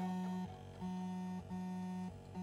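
A quiet, low electronic synthesizer note repeating in short pulses, each held for about half a second with brief gaps between, three times over the two seconds.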